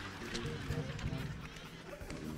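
Acoustic guitar playing a short melody of a few notes, a live musical sting after a punchline.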